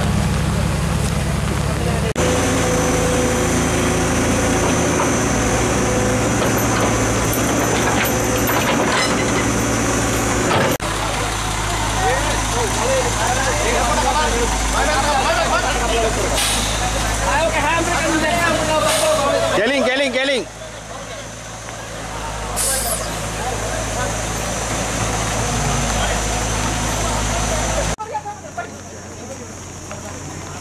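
Heavy Ashok Leyland truck's diesel engine running steadily under load as the truck is driven through deep mud, with men's voices calling over it. About two-thirds of the way through the engine sound drops away, leaving quieter voices.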